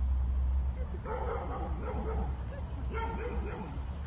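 Dogs yipping and whining in two short bouts, one about a second in and a shorter one near three seconds, over a steady low rumble.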